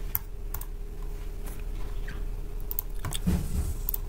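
A few sharp, scattered clicks of a computer mouse over a steady low hum.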